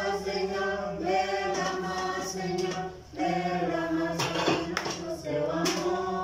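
Vocal music: voices singing a cappella in long held notes, with a short break about halfway through.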